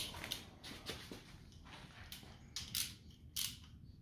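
Hand ratchet and socket being handled and set on a bolt: a series of short, sharp metallic clicks at irregular spacing.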